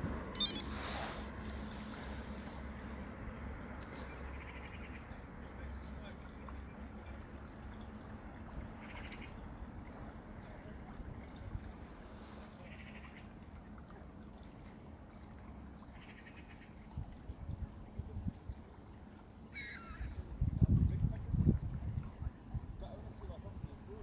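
Quiet outdoor ambience over a steady low background, with a few faint short bird calls scattered through it. A low hum fades away in the first seconds, and low rumbling gusts of wind hit the microphone near the end.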